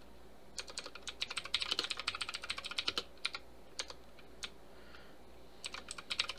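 Computer keyboard typing: a quick run of keystrokes for a few seconds, then a few scattered strokes, then another short run near the end.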